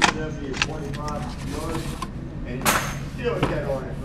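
Pistol magazines and a handgun being handled on a wooden shooting bench: a sharp knock right at the start and a louder, short clatter about two-thirds of the way in, with people talking.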